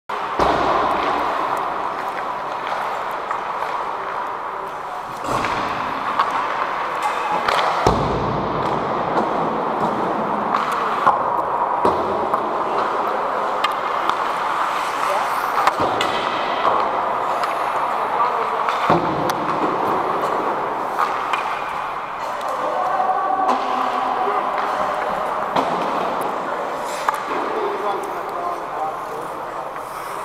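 Ice-rink hockey warm-up: a continuous din of skates on ice and indistinct players' voices echoing in the arena, with scattered sharp knocks of pucks and sticks against the boards and ice.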